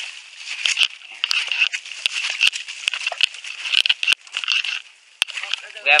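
Footsteps crunching and scuffing through dry leaf litter and twigs while climbing, with irregular sharp cracks and a steady rustle.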